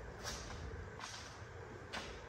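Quiet room tone with three faint soft footsteps, about three-quarters of a second apart, as someone walks on a concrete floor.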